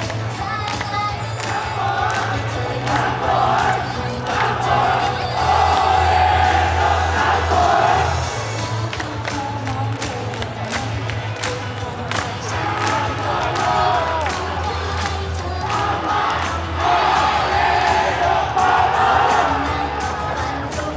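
Idol pop song played loud through a stage PA with a steady beat and heavy bass, the group singing live into microphones, and fans in the crowd shouting chants along with it.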